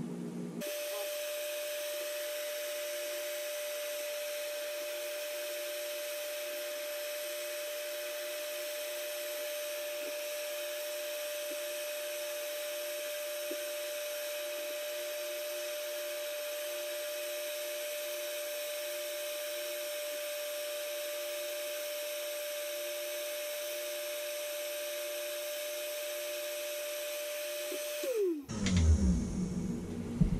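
Black & Decker heat gun running: its fan motor starts about half a second in, holds one steady whine while heating a fishing spinner for powder painting, then is switched off near the end, the whine falling in pitch as it spins down.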